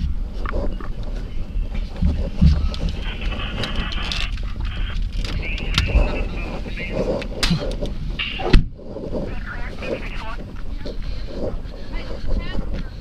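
Handling noise from a police body camera worn by an officer moving out of a patrol car: rustling and scattered knocks over a steady background. A sharp thump about eight and a half seconds in is the loudest sound, and faint indistinct voices run underneath.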